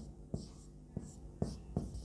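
Marker writing on a whiteboard: about five short, faint strokes of the tip against the board, spaced unevenly as letters are written.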